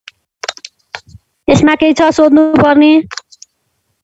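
A person speaks briefly, in words the transcript does not catch, preceded by a few short clicks, and the sound cuts off after about three and a half seconds.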